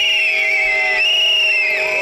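Pea whistles blown in a protest crowd: two long, trilling blasts, the second starting about a second in, over a steady lower tone.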